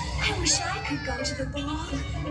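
Fireworks-show song: a high singing voice sliding between notes over music with a steady low bass.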